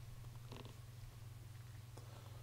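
Quiet room tone with a steady low hum, and one faint brief sound about half a second in.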